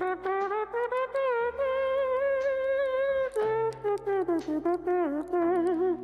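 A saxophone playing a slow melody, one long line sliding up and down in pitch and wavering with vibrato near the end, over low held notes in the middle.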